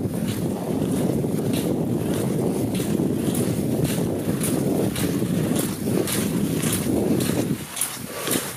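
Wind buffeting a moving microphone, with the rhythmic scrape of skate skis and poles on snow about twice a second; the wind noise drops away near the end.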